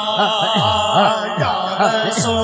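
Chanted vocal backing of an Urdu naat: short voiced syllables rising and falling in pitch at an even rhythm over a steady held drone, used in place of instruments.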